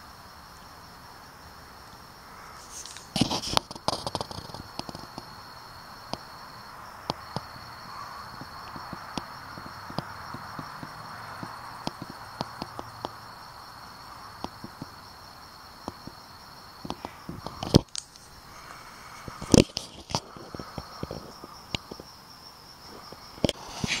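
Crickets chirring steadily in the background of a night-time outdoor scene. A few sharp knocks and clicks of close handling come through, around three to four seconds in and again twice near the end.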